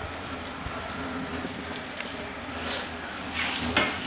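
Potatoes and onion frying in a pan with a steady sizzle, and a few scrapes from a wooden spoon stirring them near the end.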